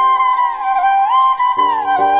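Bansuri (bamboo transverse flute) playing a slow romantic melody, gliding smoothly up and down between two notes twice. Lower sustained accompaniment notes come in near the end.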